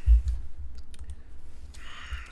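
A loud low thump right at the start, then a few faint clicks of a computer mouse over a low rumble, as a new browser tab is opened.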